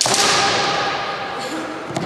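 Sharp crack of a bamboo shinai striking kendo armour at the start, followed by a long shouted kiai that fades over about a second and a half. A few light clacks of shinai near the end.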